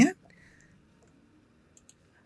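Two faint, quick computer mouse clicks close together near the end, used to switch browser tabs; otherwise near silence.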